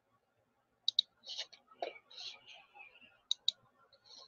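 Computer mouse button clicks: two quick pairs of sharp clicks, about one second in and again about three and a half seconds in, with faint, softer noises between them.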